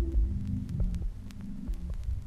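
The fading tail of a deep minimal techno track played from a vinyl record: low bass-drum pulses over a held bass hum, getting quieter, with scattered crackle clicks from the record.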